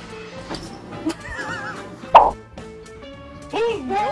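A single sudden loud thud about two seconds in, over background music, with short wavering vocal sounds just before and after it.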